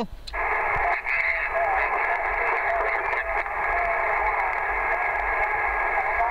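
A Yaesu transceiver's speaker giving out a weak, distorted voice from a distant station, buried in a steady rush of band noise and squeezed into a narrow, telephone-like band; it comes in about a third of a second in.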